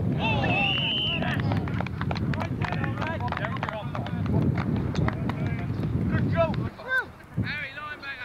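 Football players shouting on the field, with one long held shout about half a second in, over a low rumble and many sharp clicks and thumps of running footsteps on grass. The rumble cuts off about seven seconds in, leaving only scattered shouts as the teams line up.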